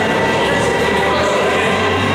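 Loud, steady background music playing over a sports hall's sound system, with no clear impacts from the equipment.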